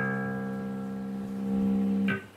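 Electric bass playing one sustained note through a modified Darkglass B3K bass overdrive circuit, the note rich in overtones and slowly fading, then cut off right at the end.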